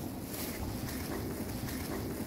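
Steady wind rushing over a phone's microphone outdoors, with no distinct knocks or other events standing out.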